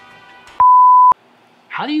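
A single steady beep tone, pitched around 1 kHz and about half a second long, cuts in and out abruptly about half a second in. It is much louder than the faint background music that fades out just before it.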